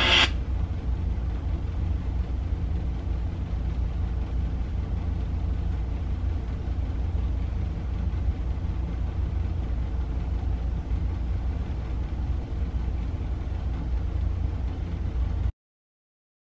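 Steady low rumbling drone of a horror film's opening soundtrack playing on a television. It cuts off abruptly near the end.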